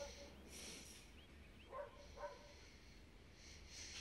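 Near silence: quiet room tone, with two faint short sounds a little before the middle.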